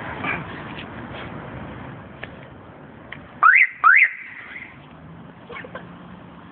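Two short rising whistles about half a second apart, over a low steady background noise.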